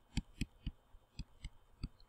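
Faint, irregular clicks of a stylus tapping on a tablet screen while handwriting, about six in two seconds.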